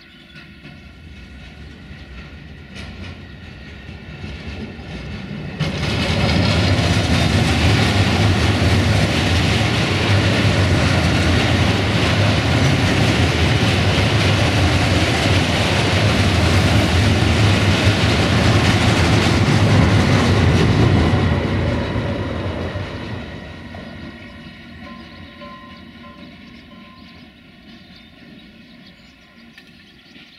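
Freight train of covered hopper wagons rolling past on the rails behind a Siemens Smartron electric locomotive, the wheels and wagons rattling. The noise jumps up loud about five seconds in, holds for about fifteen seconds, then fades as the train moves away.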